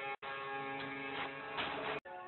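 Documentary soundtrack music with steady held tones, dropping out to silence for an instant just after the start.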